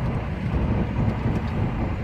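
Steady drone of a heavy truck's engine and tyre noise heard inside the cab while cruising on the highway.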